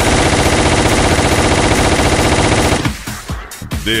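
Machine-gun sound effect in a DJ jingle: a dense, rapid-fire burst lasting nearly three seconds that cuts off abruptly.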